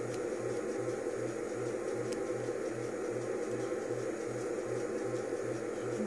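Steady low background hum that pulses about two and a half times a second, with a couple of faint clicks from handling the rubber bands and clip.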